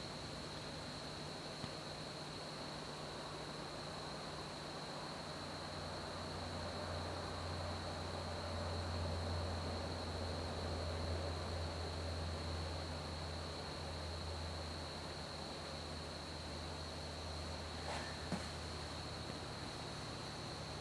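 Homemade pulse motor running very quietly on its capacitors: a faint low hum that swells a little midway, with a thin steady high-pitched whine over it and no rumbling bearings or ticking relays.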